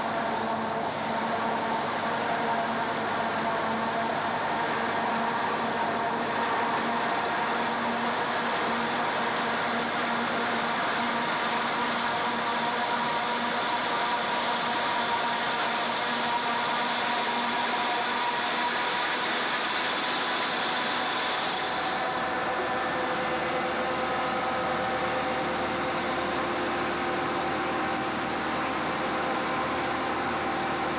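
Forage harvester chopping standing maize, its cutterhead and crop blower running with a steady, loud mechanical whine made of several held tones. About two-thirds of the way in, the highest part of the sound falls away and the tones shift slightly lower.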